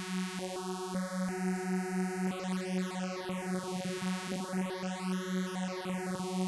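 Arturia Pigments software synthesizer playing one buzzy note, repeated about three times a second, through its phaser filter. Its notches step upward during the first two seconds, then sweep up and down through the overtones as the cutoff is turned, giving a swirling, swooshing phaser sound.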